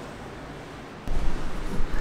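Steady outdoor background noise by the sea, then about a second in a sudden loud low rumble and buffeting on the microphone.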